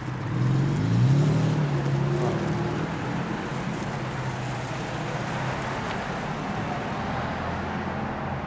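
A car engine rising in pitch as it speeds up about a second in, then running on as a steady road hum.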